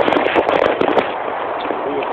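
Rushing noise of a zipline ride, trolley on the steel cable and air moving past. A dense run of sharp crackles and clicks fills the first second, then the rushing goes on more evenly.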